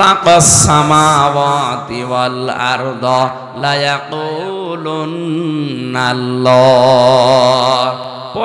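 A man's voice chanting a sermon in a sung, melodic intonation through a microphone, drawing out long held notes. Near the end comes one long wavering note, the loudest part.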